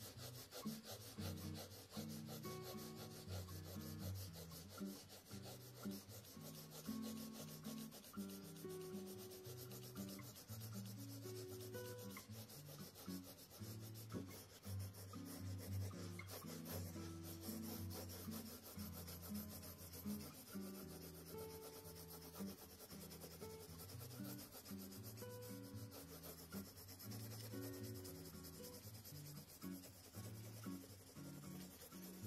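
A 2 mm mechanical pencil with 2B lead shading on sketch paper: rapid, continuous back-and-forth scratching strokes of graphite as the hair is darkened. Soft background music with held notes plays underneath.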